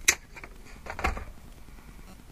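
Wire cutters snipping through fishing trace wire with one sharp snap, followed by a few lighter clicks and a soft knock about a second in.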